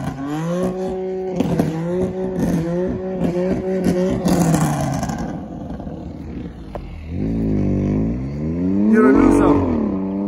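Sports car engine running at a steady note with small steps in pitch for the first few seconds, then revving up and back down near the end, the loudest part.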